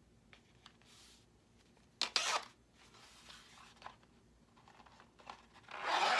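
A zipper set into an EVA foam bracer being undone as the bracer comes off the forearm: a short rasp starting sharply about two seconds in, then a longer rasp that swells near the end.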